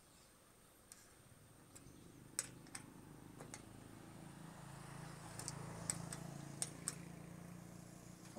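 Scattered faint metallic clicks and ticks from a hex key working the bolt of an aluminium solar-panel end clamp as it is tightened onto the rail. A low hum swells in the second half and eases off near the end.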